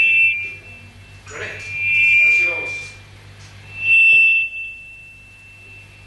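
A band's sustained chord cuts off just after the start, then a high-pitched feedback whine from the band's amplification swells twice, about two and four seconds in, the second time lingering faintly, over muffled voices and a low steady hum.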